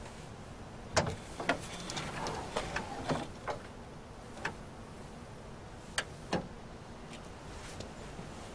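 Sharp metallic clicks and clunks of a car hood being unlatched and raised, clustered between about one and three seconds in, with a few single clicks later.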